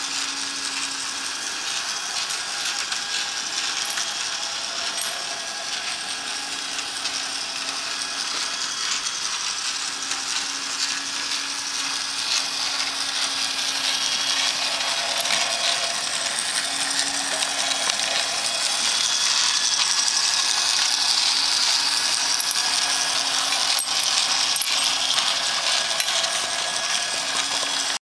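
Toy train of a motorized Christmas village ornament running around its circular track: a steady mechanical whirr with a low hum that drops in and out, a little louder in the second half.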